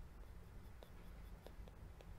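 Near silence with a few faint, light taps of a stylus on a tablet screen as words are handwritten.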